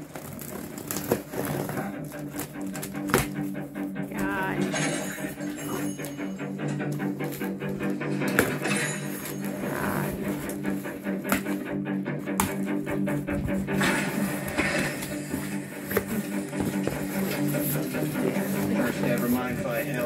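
Background music with steady held notes, over short clicks and snips of scissors cutting packing tape and the handling of a cardboard box being opened.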